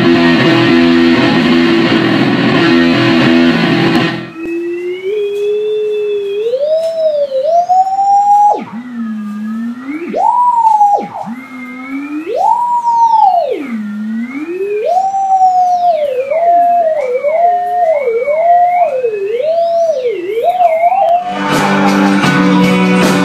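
Electric guitar strummed through effects pedals. About four seconds in it cuts to a single wavering tone sliding up and down in pitch, theremin-style, that wobbles faster near the end. The strummed guitar comes back just before the end.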